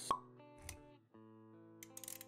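Intro music with animation sound effects: a sharp pop just after the start, a short low thump a little later, then held musical notes with a few light clicks near the end.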